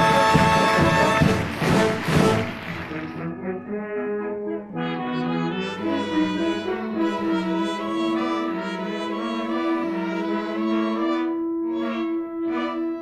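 Orchestral scene-change music led by brass. It is loud and full for the first few seconds, then drops to a softer passage with a long held note.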